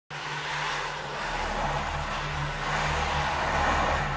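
A steady hiss with a low, wavering hum underneath, starting abruptly and growing slightly louder.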